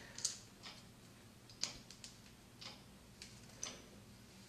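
Hands handling locs, hair clips and an interlocking tool close to the microphone: faint, irregular small clicks and light rustling, about six clicks over four seconds.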